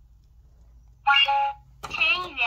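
A toy cash register's scanner beeping once as a can is scanned: a loud electronic tone about half a second long that steps down in pitch at its end. It comes about a second in and is followed by a short click.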